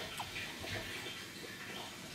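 Faint, irregular small crunches and mouth clicks of someone chewing a bite of raw, crisp Black Hungarian pepper.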